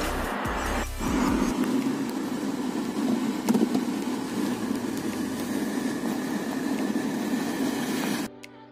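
Steady road and engine noise heard inside a car's cabin while driving, after a brief gust of wind on the microphone in the first second.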